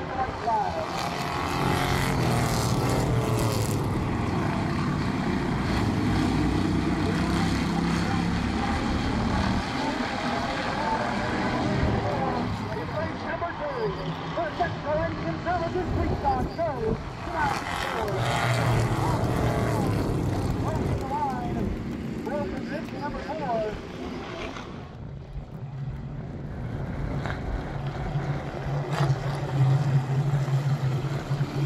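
Street stock race cars' engines running around a paved oval, their pitch rising and falling as the pack laps. Near the end, after a brief dip in level, a steady low drone from the field rolling slowly in formation.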